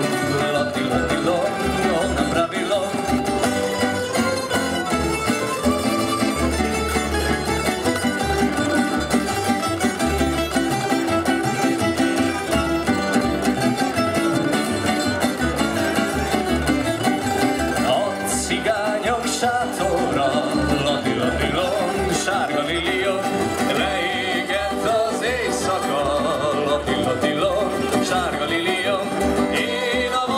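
Tamburica ensemble playing a lively Croatian folk tune: small plucked tamburicas and guitars over a double bass, with a steady rhythm throughout.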